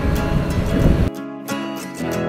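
Wind rush and riding noise from a moving motorcycle over background acoustic guitar music; about a second in, the riding noise cuts off suddenly and only the guitar music is left.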